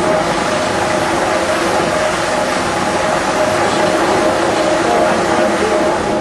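A water turbine running, with water rushing through it and its gearing and line shaft turning: a steady, loud rush with faint mechanical tones over it.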